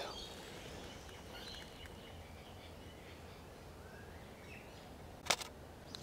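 Faint outdoor background with a few faint high chirps, then a single sharp camera shutter click a little over five seconds in.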